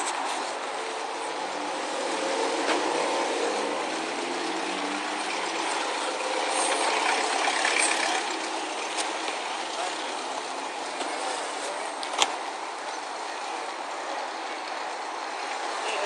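Steady outdoor traffic noise, with a vehicle engine passing in the first several seconds and a single sharp click about twelve seconds in.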